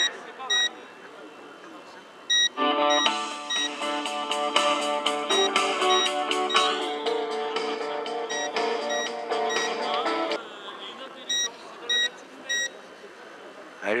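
Short high electronic beeps repeating in groups of two or three. From about two and a half seconds in to about ten seconds, an electronic tune with held notes plays over them.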